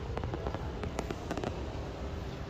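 A quick, irregular series of sharp clicks and pops, the loudest about a second in, over a steady low rumble.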